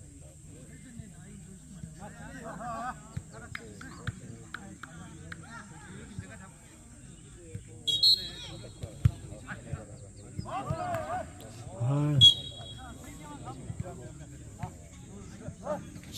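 A jokgu (foot volleyball) rally: the ball is struck with a thump now and then, and players call out and shout, loudest about eight and twelve seconds in.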